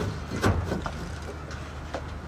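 Handsaw starting a cut in a timber plank: a few short strokes about half a second in, over a steady low hum.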